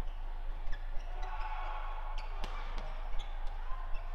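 Badminton rally: rackets hit the shuttlecock with short, sharp cracks, several in quick succession. The loudest comes about two and a half seconds in, over the steady background noise of the hall.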